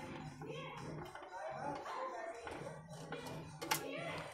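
Small screwdriver backing a screw out of a computer power supply's fan mount: quiet, with a single sharp click near the end as the screw comes free. Faint voices and a low hum sit in the background.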